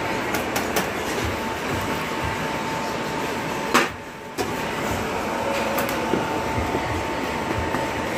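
Steady mechanical whir of commercial kitchen equipment with a constant hum, with light clinks of stacked metal baking pans being touched by hand. A sharp knock about four seconds in is followed by a short dip in the sound.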